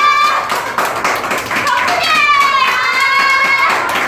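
A group clapping their hands in irregular claps. A woman's high-pitched voice holds a long note from about halfway through.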